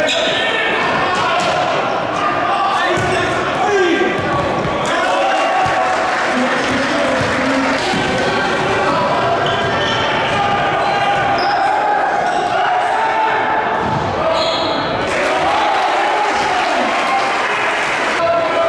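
Basketball being dribbled and bounced on a hardwood gym floor during play, with a steady mix of spectators' voices and shouts echoing through the gym.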